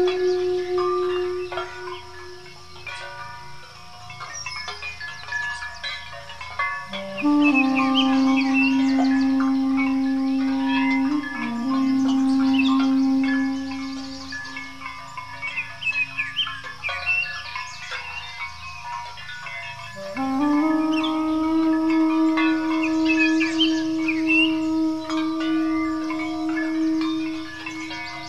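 Armenian duduk playing long held notes: it drops to a lower note about seven seconds in, fades out around the middle, and comes back on a higher note about twenty seconds in. Birds chirp over it throughout.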